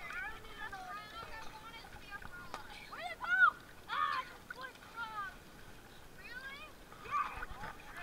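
Young children's high voices calling out and squealing, with water splashing. The loudest is a short high squeal about three and a half seconds in.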